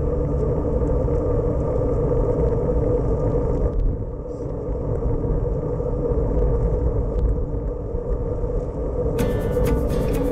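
Steady low rumble of wind and road noise on a bicycle-mounted action camera riding in a group of racing cyclists. About a second before the end, music cuts in.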